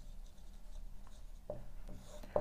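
Marker pen writing on a whiteboard: faint strokes as a short word heading is written.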